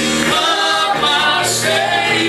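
Live gospel worship song: voices singing over a steady sustained instrumental backing, with a lead singer on the microphone.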